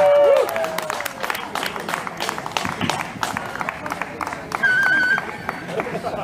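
Audience applause, scattered clapping from a crowd at the end of a song, with a held sung note dying away in the first half second. About five seconds in, a short high warbling tone sounds for about half a second.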